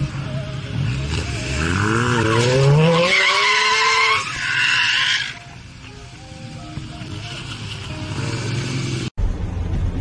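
An engine revving up sharply, then tyres squealing and skidding loudly for a few seconds. After that a lower, steadier engine sound runs until an abrupt cut near the end.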